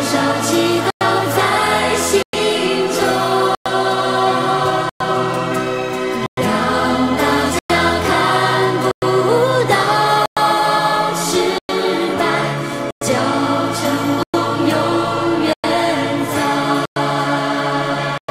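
Mandarin pop ballad music playing loudly, with a full arrangement and no clear lead vocal words. It is broken by very short dropouts to silence about every second and a third.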